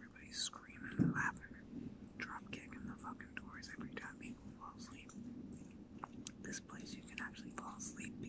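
A man talking quietly, close to a whisper.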